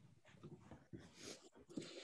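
Near silence: room tone with a few faint, soft sounds.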